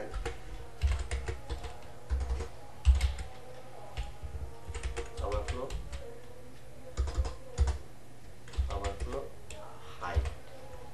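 Computer keyboard typing in short bursts of keystrokes, separated by brief pauses.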